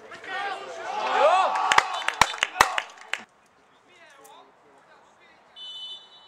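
Players and spectators shouting and cheering a goal, with a few sharp claps among the shouts; it cuts off abruptly about three seconds in. Quiet outdoor ambience follows, and near the end comes a short blast of a referee's whistle.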